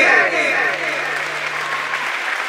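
Audience applause in a hall as a repeating falling-note music pattern fades out in the first half-second, with a low steady tone held underneath.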